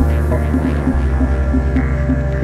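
Electronic background music with a pulsing beat about three times a second; a deep sustained bass line comes in right at the start.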